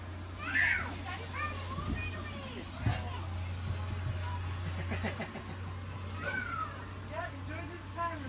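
A young child's voice babbling and squealing in short high rising-and-falling sounds, with a steady low hum beneath.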